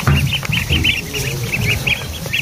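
A brood of week-old ducklings peeping constantly, many short high peeps overlapping several times a second, over a low rumble.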